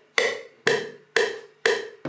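A single percussion sample struck four times at an even pace of about two hits a second, each hit sharp and dying away quickly before the next, with nothing else playing.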